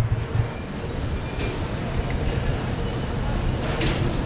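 Steady city street traffic noise, a continuous low engine rumble from passing and idling vehicles.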